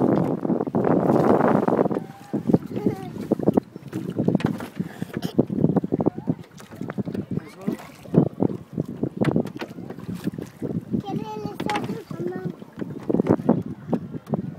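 Wooden rowboat being rowed: a string of short knocks from the oars working in their oarlocks, with water splashing around the blades. Wind buffets the microphone for the first two seconds.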